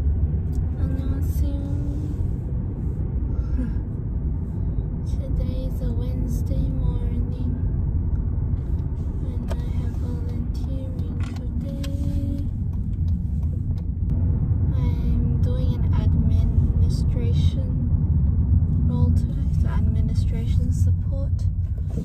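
Steady low rumble of a car cabin on the move, road and engine noise heard from inside.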